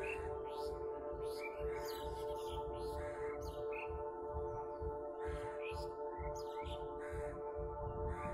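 Ambient meditation music, a steady drone of held tones, with birds chirping many times over it in short, quick calls.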